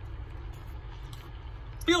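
Steady low hum of a car's idling engine heard inside the cabin.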